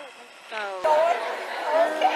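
Speech only: several people talking at once, in background chatter.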